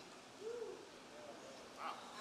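Faint, low hummed "mm" about half a second in and another faint voice near the end, over quiet room tone: listeners murmuring in response during a pause in a sermon.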